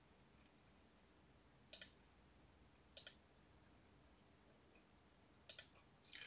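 Three faint computer mouse clicks, each a quick double tick, about a second or more apart, over near silence.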